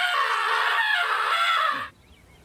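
A high-pitched voice screaming in one long, wavering yell that cuts off suddenly near the end.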